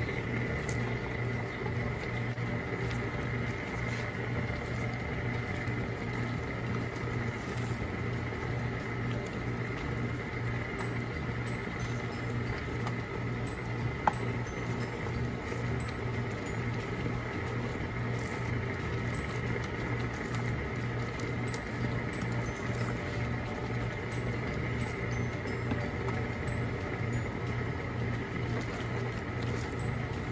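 Thick praline candy mixture bubbling in an aluminium pot while a wooden spoon stirs it, over a steady low hum. A single sharp click about halfway through.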